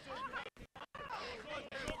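Faint, distant voices of players calling out during a football match, with the sound cutting out briefly a few times about half a second in.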